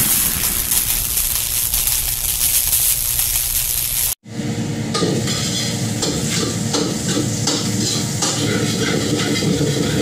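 For the first four seconds the noisy tail of the channel's intro sound effect fades out. After a sudden break, a metal ladle stirs and scrapes in a wok over frying sizzle, with many small clicks of metal on metal.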